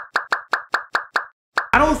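A rapid string of short cartoon-style pop sound effects, about six a second, each with a quick drop in pitch. After a brief pause there is one more pop, and then the voice comes in near the end.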